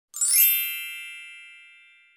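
A single bright chime, struck once just after the start and ringing on as it slowly fades.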